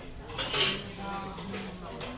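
A short clatter of dishes and cutlery clinking, loudest about half a second in, with indistinct voices in the background.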